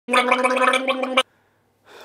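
A man gargling, holding one steady pitch for just over a second, then stopping abruptly.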